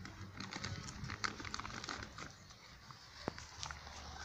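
Plastic bag of small decorative pebbles crinkling and rustling as it is torn open and handled, with many light scattered clicks and one sharper click near the end.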